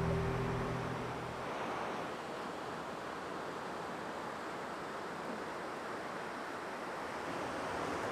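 Steady beach ambience of surf and wind, an even rushing noise, after the last low notes of music die away in the first second or so.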